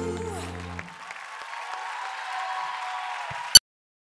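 A pop band's last held chord dies away within the first second, and studio audience applause follows. Near the end a sharp click is heard and the sound cuts off abruptly.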